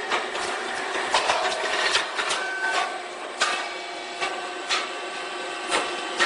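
Rice cake popping machine running: a steady motor hum with sharp pops and clacks every second or so as its heated molds work through a popping cycle.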